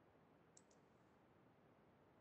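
Near silence: faint steady hiss, with a quick pair of faint clicks about half a second in.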